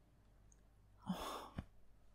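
Quiet for about a second, then one short, breathy breath from a woman, followed by a brief click.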